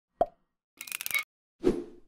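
Logo-animation sound effects: a short pop, then a half-second burst of rapid clicks, then a deeper thump that dies away.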